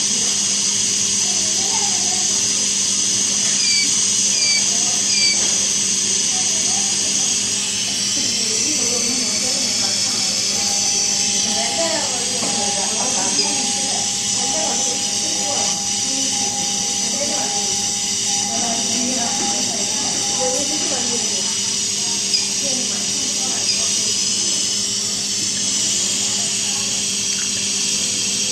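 Infant Flow SiPAP driver running with a steady hiss of gas flow over a low hum. From about a third of the way in, a steady alarm tone sounds for roughly ten seconds, then stops.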